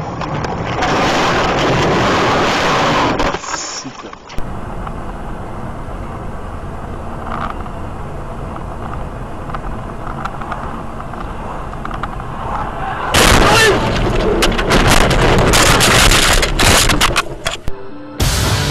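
Car dashcam audio from inside a moving car: steady road and engine noise. About thirteen seconds in it turns into a louder, rough stretch full of sharp bangs and knocks lasting several seconds.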